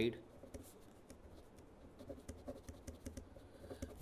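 Pen writing on paper: faint scratching strokes with small irregular ticks as the letters are formed.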